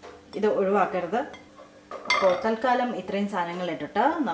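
A woman talking over the clatter of a plastic food processor bowl and lid being handled, with a sharp clink about two seconds in.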